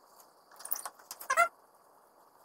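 Metal clicks and rattles as the Festool spindle motor is handled and slid back into the Shaper Origin's housing after a bit change: a quick run of clicks from about half a second in, ending in a short squeak.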